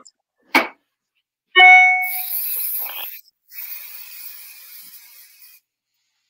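Aerosol hairspray can spraying in two bursts of hiss, the first about two seconds in and lasting about a second, the second longer and fading out near the end. A short click comes first, and a brief ringing tone sounds just before the first spray.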